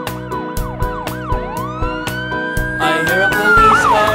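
Police car siren: quick up-and-down sweeps in the first second or so, then one long rising wail that holds and falls away near the end, over backing music with a steady beat.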